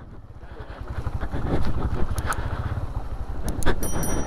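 Motorcycle engine running at low speed over a rocky track, getting louder over the first two seconds and then holding steady, with a few sharp clicks.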